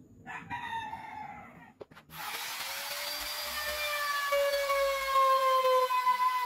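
Maktec trim router switched on about two seconds in, then running with a high, steady whine as it is brought onto the edge of the curved plywood top. A short pitched call sounds before it starts.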